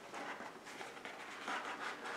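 Cardboard drawer-style gift box being slid open, its inner tray rubbing faintly against the outer sleeve.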